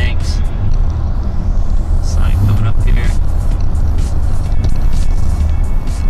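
Steady low rumble of road and engine noise inside a moving car at highway speed, with music and indistinct voices over it.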